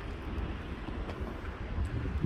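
Wind rumbling on a phone microphone outdoors: a steady low buffeting noise with no distinct events.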